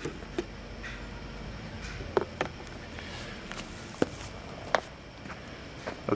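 Sharp plastic clicks and knocks, about five spread over the few seconds, as the third brake light is worked loose from the plastic spoiler, over a steady background hiss.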